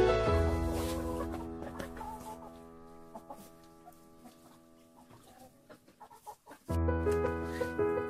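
Background music with sustained notes fades down over the first few seconds. In the quieter middle, hens clucking come through. The music comes back in loud about seven seconds in.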